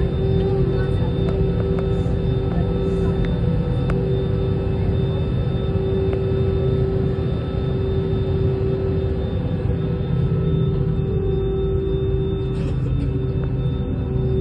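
Cabin noise inside an Airbus A320-family airliner rolling slowly on the ground: the jet engines run at low power with a steady hum and a sustained whine over a low rumble.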